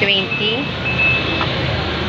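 Steady street traffic noise with a high, thin electronic beep held for about a second near the start, and brief fragments of voices.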